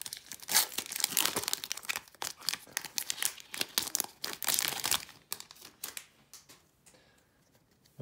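Foil wrapper of a Donruss basketball trading-card pack being torn open and crinkled by hand. A dense run of crinkling for about five seconds that thins out and goes nearly quiet near the end.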